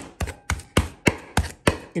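Metal hand meat masher pounding a kofte mixture of minced meat, cooked split peas and rice on an aluminium tray: sharp, even strikes, about three a second. The pounding mashes the mixture into a paste.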